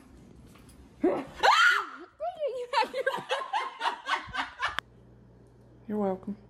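A loud cry from a person, sliding up in pitch and back down, then quick bursts of laughter, about four a second, that cut off suddenly near the end.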